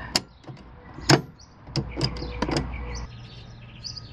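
A double-pole 20-amp circuit breaker for a pool pump snapped off and back on to power-reset the pump: two sharp clicks about a second apart, followed by a few fainter clicks.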